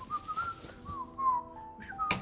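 A person whistling a short wavering melody, the pitch sliding between notes. Just under a second in, a steady held chord of several notes comes in underneath.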